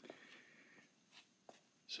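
Near silence: faint room tone, with one faint click about one and a half seconds in.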